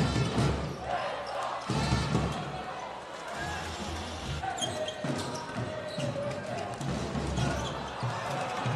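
A basketball being dribbled on a hardwood court during live play, mixed with arena noise.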